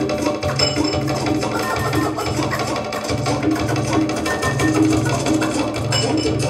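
Beat with a pulsing bass line played from DJ turntables, with the record being scratched by hand over it.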